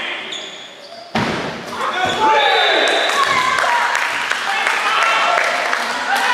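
A single loud thump from the giant kin-ball about a second in, followed by players shouting over one another in a reverberant sports hall.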